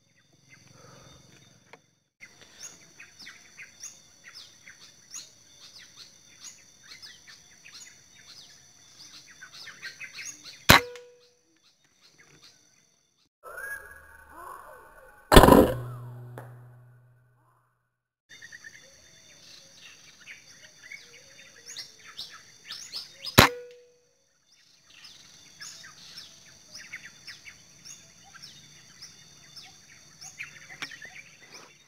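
Two sharp air rifle shots, about 11 and 23 seconds in, each a crack with a short ringing tone, over birds chirping and calling throughout. Midway, about 15 seconds in, a louder thump with a brief hum.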